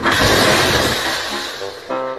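A glass tabletop shattering onto a wooden floor: a sudden crash of breaking glass that dies away over about a second and a half as the pieces settle.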